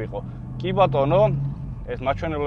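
A man talking inside a moving BMW M4's cabin, over the steady low hum of its engine and road noise.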